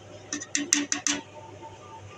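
A quick run of about five light clinks against a steel cooking pot, ending a little past the first second, with a faint ringing tone left after them.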